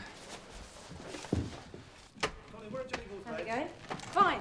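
A dull thump, then a sharp click a second later, followed by a short stretch of a voice.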